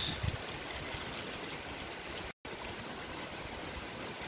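Steady rush of running water: spring water flowing into a concrete fish pond. It cuts out completely for a moment a little past halfway.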